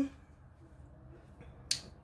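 A single short, sharp click of a plastic meal-prep container being picked up off the counter, near the end of an otherwise quiet stretch.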